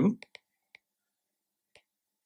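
The end of a spoken word, then near silence broken by four faint, short clicks spread across the pause.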